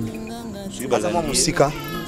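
Men's voices talking over a background music bed of steady held tones.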